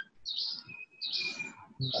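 Birds chirping in the background: a few short, high chirps and a thin, steady whistle in the middle.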